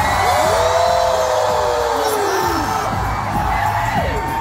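Concert crowd cheering and whooping, with a few long rising-and-falling "woo" calls carrying over the noise for about two seconds.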